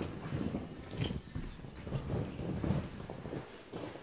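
Irregular scuffs and knocks of a climber's hands and shoes on the holds and panels of a bouldering wall, with one sharp knock about a second in.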